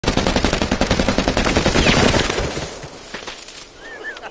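AR-10 rifle firing fully automatic: one long, fast, even burst of about two and a half seconds, with the shots echoing away after it stops.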